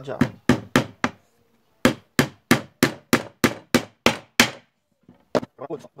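Hammer driving small nails into thin pallet-wood slats: four quick blows, a short pause, then a steady run of about nine blows at roughly three a second, and one last blow near the end.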